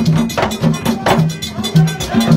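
Percussion music: low drum strokes repeating about twice a second, with a struck metal bell ringing over them. The drumming is for a Petro party calling the spirits.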